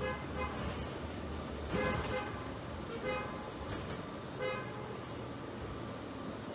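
A handful of short, irregularly spaced horn toots, the loudest about two seconds in, over the steady low running hum of a New Flyer DE60LFR diesel-electric hybrid articulated bus heard from inside the cabin.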